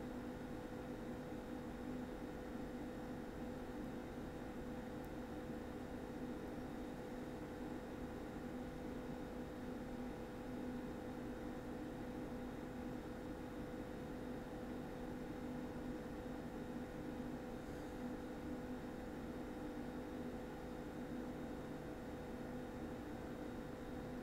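Faint, steady room tone: a low electrical or mechanical hum with hiss, unchanging throughout.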